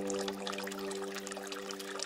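Trickling, dripping water with a faint held chord of the background meditation music under it.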